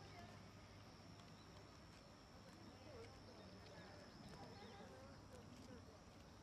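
Faint, distant voices of a small group chatting as they walk, in otherwise very quiet open-air ambience. A thin, steady high tone runs underneath and stops about five seconds in.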